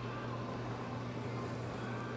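Quiet room tone: a steady low electrical hum with a faint hiss, and no distinct crackle from the burning steel wool.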